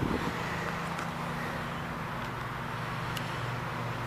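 Steady low hum of distant road traffic, a faint even drone with no breaks. A faint click about three seconds in.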